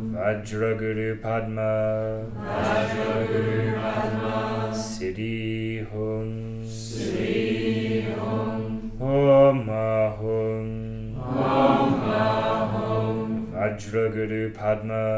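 A group of voices chanting a Buddhist mantra together in unison, in repeated phrases a few seconds long over a steady low held tone.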